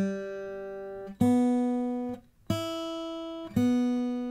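Martin GPC-X2E acoustic guitar strings plucked one at a time, single open notes of different pitches, each ringing and fading before the next, with a brief damped silence just past halfway. The strings are being sounded singly to check their tuning on the guitar's built-in tuner.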